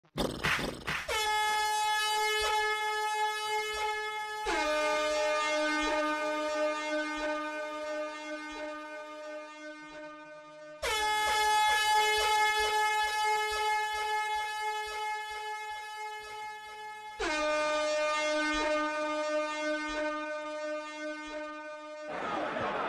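Loud, buzzy horn tones held long and steady. A higher note lasts about three seconds, then a lower note about six, and the high-low pair repeats.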